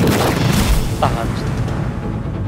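A sudden loud boom that carries on as a heavy rumbling crash, a dramatised earthquake effect, under dramatic music.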